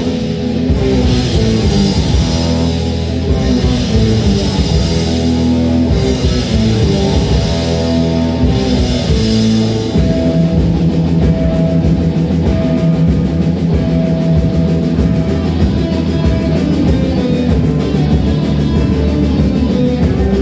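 Live rock band playing: electric guitars, bass guitar and drum kit. About halfway through, the bright crashing top end drops away and long held notes ring on over the bass and drums.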